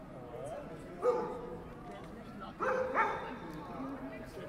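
A dog barking three times, sharpest about a second in, then two quick barks near the end, over the murmur of passers-by.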